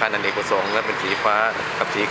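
Speech only: a man talking in Thai.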